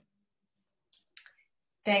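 Two brief, sharp clicks about a second in, a quarter-second apart, in otherwise dead silence. Near the end a woman's voice begins speaking.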